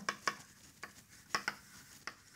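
Chalk tapping and scraping on a blackboard while writing: a handful of short, irregular clicks.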